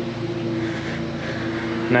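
Steady engine drone of lawn mowers running nearby, a constant hum holding several fixed pitches.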